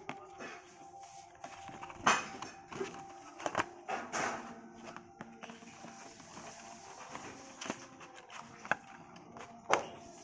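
Cardboard earphone box being handled: a few sharp clicks and scrapes, loudest about two seconds in and just before the end, over faint steady background music.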